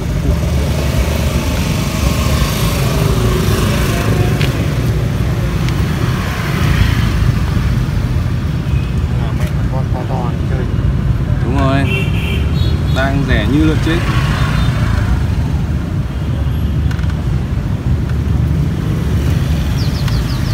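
Steady low rumble of road traffic, motorbikes among it, with faint voices in the background.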